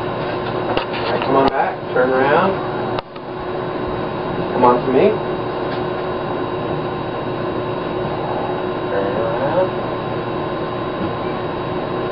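Steady room hum with a few faint, brief snatches of speech. The sound drops out sharply for a moment about three seconds in.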